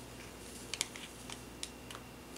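Faint, scattered small clicks and crinkles of a small plastic powder packet being handled over a plastic mould tray.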